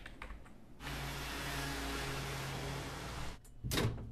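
Laptop keys clicking briefly, then a desktop inkjet printer running for about two and a half seconds, a steady motor noise with a low hum that cuts off sharply. A loud short clatter follows near the end.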